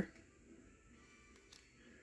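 Near silence in a small room, with faint handling of trading cards being slid through the hand and a soft click about one and a half seconds in.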